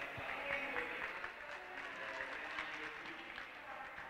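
Audience applauding: many hands clapping at once.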